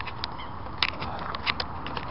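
Handling noise from a handheld camera being carried out of a bivvy tent: irregular sharp clicks and rustles, about eight in two seconds, over a steady outdoor hiss.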